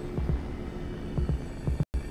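Low heartbeat thumps in pairs, about one pair a second, over a steady droning hum in a film's sound design. The sound cuts out for a moment near the end.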